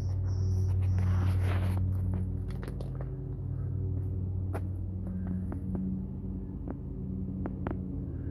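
Steady low mechanical hum with a pitched drone, the sound of a running machine, with scattered light clicks and knocks throughout and a brief high tone in the first second.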